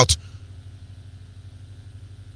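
A man's voice breaks off right at the start, leaving a faint, steady low hum in the background.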